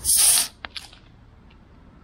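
Aluminium beer can popped open by its pull tab: a short, loud hiss of escaping gas lasting about half a second, followed by a couple of small clicks.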